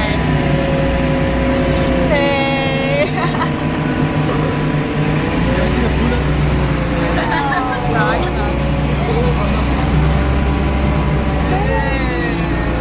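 Tank engine running with a loud, steady low drone, heard from inside the hull as the tank is driven, with people shouting over it.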